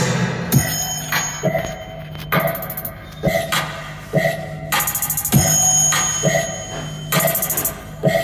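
Electronic dance music played loud through portable Bluetooth speakers for a sound test: a beat about once a second with ringing, bell-like tones over a steady bass.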